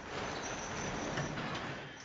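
A TV episode's soundtrack playing a steady, even hiss-like ambience with no dialogue.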